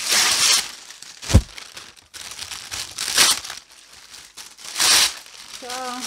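A thin white sheet being scrunched up by hand, giving several separate bursts of crinkling. There is a single dull thump about one and a half seconds in.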